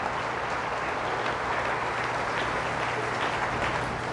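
A congregation applauding, a steady patter of many hands clapping at an even level, called for by the priest.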